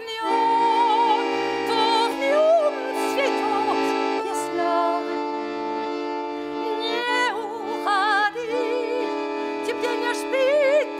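A Scandalli piano accordion plays slow held chords that change a few times, while a woman sings long notes with wide vibrato in a classical style.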